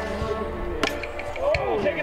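Music track with steady held tones, a single sharp knock a little under a second in, and a voice coming in near the end.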